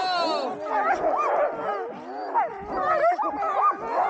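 Many sled dogs barking, yipping and howling at once: a continuous clamour of overlapping, rising and falling calls.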